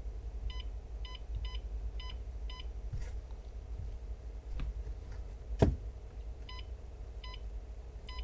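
Short electronic beeps from a 2006–09 Mustang gauge cluster as its info button is pressed through the message-center menu. There are five quick beeps about half a second apart, a single sharp click a little past halfway, then two more beeps near the end, over a low steady hum.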